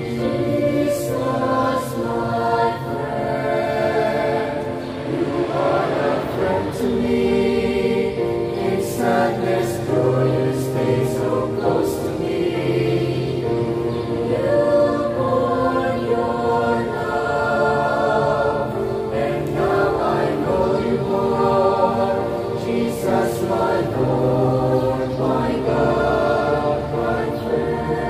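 Mixed choir of young singers singing a communion hymn, with accompaniment.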